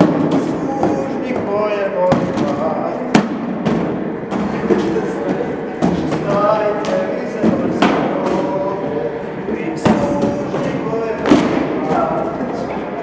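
Sharp thumps and knocks, about six of them at irregular intervals, over a mix of voices.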